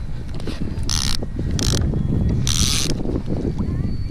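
Line running off a conventional saltwater reel in three short bursts, over a steady rumble of wind on the microphone.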